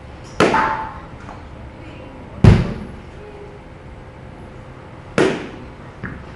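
A bat hitting balls three times, about two and a half seconds apart, each a sharp crack with a short ring; the middle hit is the loudest.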